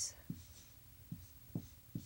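Marker writing on a whiteboard: about four faint, short strokes.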